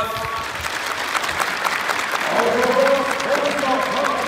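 Stadium crowd applauding, a dense patter of many hands clapping, with voices heard over it from about halfway through.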